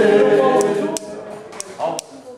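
A small group of people singing together without instruments, holding a sung chord that breaks off about a second in; quieter voices follow.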